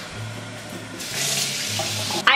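Water running from a bathroom tap, a steady rush that gets louder about a second in.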